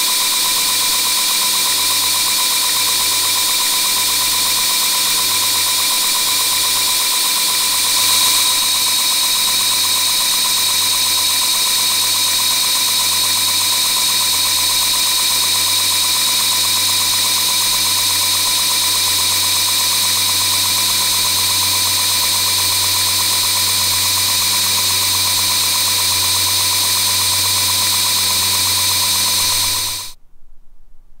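Belt grinder running steadily with a constant whine while the shoulders of a twist drill bit are ground against the belt's edge to form the cutting edges of a step drill, rising briefly about eight seconds in.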